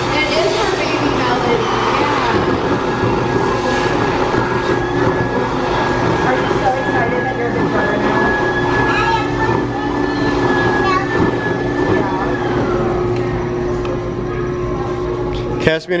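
Build-A-Bear stuffing machine blowing fibre fill into a plush bear through its nozzle: a steady loud whoosh with a hum and a high whine. The whine drops slightly about three quarters of the way through, and the machine cuts off suddenly just before the end.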